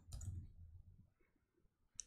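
A few soft computer keyboard keystrokes in the first second, then near silence.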